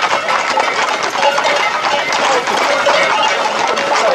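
Horses' hooves clattering on the road in a dense mix with a crowd's shouting voices, over a faint steady hum.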